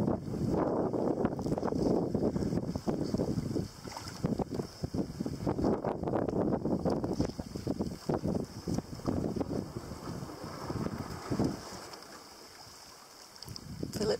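Wind gusting over the microphone above the wash of water around a fibreglass mokoro being poled through a reed channel. The gusts ease off for a moment near the end.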